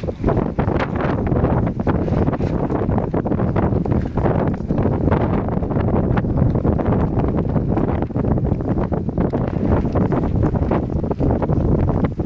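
Wind buffeting the microphone: a steady, loud low rumble.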